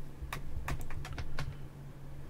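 Computer keyboard keys clicking, about half a dozen keystrokes at an uneven pace, over a steady low hum.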